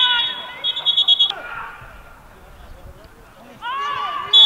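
A shrill whistle blast on the football pitch, held and then trilling in quick pulses, cutting off suddenly about a second in. Raised voices are shouting around it and start again near the end.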